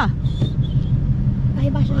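Ford Mustang engine running at low revs, heard from inside the cabin as the car turns slowly.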